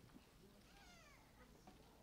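Near silence, with one faint high cry falling in pitch about a second in.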